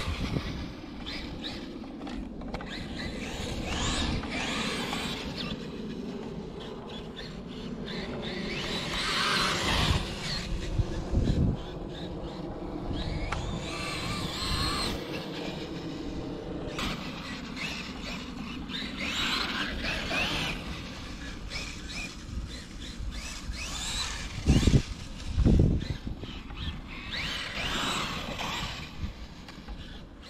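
Traxxas Wide Maxx electric RC monster truck driving over grass, its motor and drivetrain whine rising and falling as the throttle is worked. A few heavy thumps as it bumps and lands, the loudest two close together about three-quarters of the way through.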